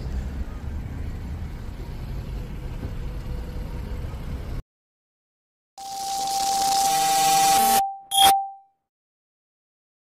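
Low outdoor background rumble that cuts off abruptly. After about a second of silence, a glitchy intro sound effect swells for about two seconds over a steady tone and ends in a short ding.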